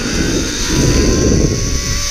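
Zip line trolley pulleys running along a steel cable at speed, a thin whine rising slightly in pitch as the rider gathers speed, under a loud rumble of wind buffeting the microphone.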